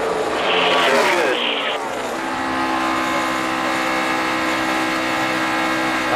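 NASCAR stock car V8 engines at full throttle. In the first two seconds the engine pitch falls as the cars go by; from about two seconds in a steady high engine drone holds.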